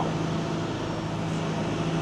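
Steady low mechanical drone of airport ground-support equipment running beside a parked turboprop airliner, with a constant hum and no rise or fall.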